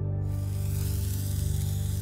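A burning fuse hissing and sizzling as it throws sparks, starting just after the start, over a steady low music drone.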